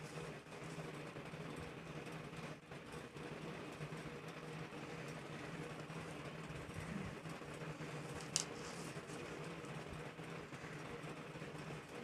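Steady low hum, with faint rustling of paper and a tape measure being handled and one short rustle about eight seconds in.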